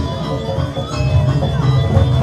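Balinese gamelan music: bronze metallophones ringing in many steady tones over a dense, pulsing low beat.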